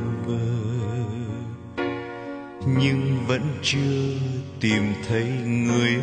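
Instrumental interlude of a slow Vietnamese ballad: a lead melody with vibrato over sustained chords and bass, the accompaniment growing louder and fuller a little before halfway.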